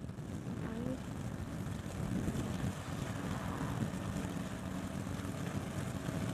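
The engine of a 16-foot Sea Nymph motor boat running steadily as the boat motors past under way, heard as a continuous low rumble.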